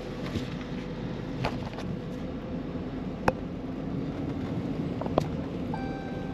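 A car rolling slowly at low speed, heard from inside the cabin as a steady low hum, with a few sharp clicks at intervals of a second or two.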